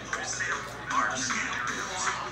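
A television playing a commercial break: music with a voice over it, heard through the set's speaker across the room.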